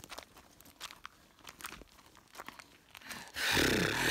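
Footsteps in sandals on a loose, stony gravel path: soft irregular crunches of stones underfoot. Near the end a louder rustling noise comes in.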